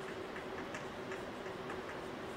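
Chalk clicking and scratching on a blackboard as words are written by hand: a run of light, irregular clicks, about four a second, over a steady faint hum.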